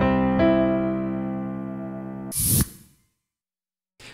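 Piano chords from a software piano instrument played live on a MIDI keyboard: a held chord with another added just after the start, ringing and slowly fading. About two and a half seconds in, the sound stops after a short hissy noise, and silence follows.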